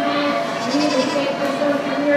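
Goats bleating repeatedly over a background of crowd chatter in a large arena.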